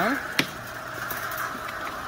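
Worm-harvesting trommel running, its rotating drum screen giving a steady hum, with one sharp knock about half a second in.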